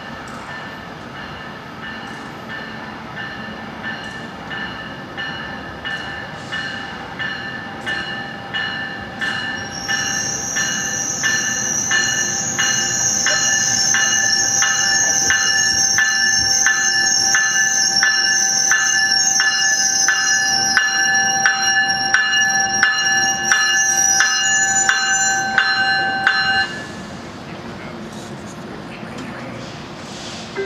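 Metrolink commuter train's bell ringing at a steady rhythm of about one and a half strokes a second, growing louder as the train pulls into the station. High-pitched brake squeal joins about ten seconds in and fades a few seconds before the end. The bell cuts off suddenly shortly before the end as the train comes to a stop.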